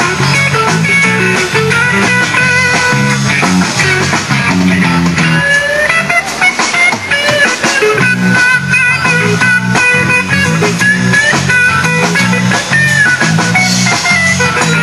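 Live rock band playing an instrumental passage: electric guitar lines with bent, gliding notes over a repeating bass figure and drums.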